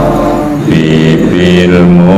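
A man's voice chanting a prayer through a microphone in long, held notes, with one change of pitch partway through.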